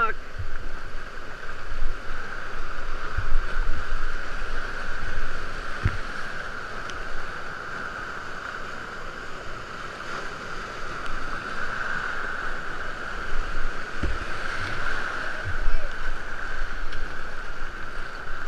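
Whitewater rapids rushing steadily around a kayak, with a few dull low knocks of water and paddle against the boat and camera.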